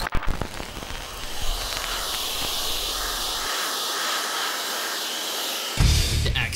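Hair dryer blowing into an inline hockey skate, a steady rushing hiss, after a few short clicks at the start; it cuts off just before the end.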